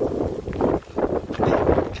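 Wind buffeting the microphone: a rumbling rush that swells twice.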